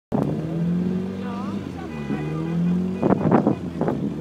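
Car engine running at a steady pitch, dipping briefly about two seconds in, with louder irregular noise and voices joining in over the last second.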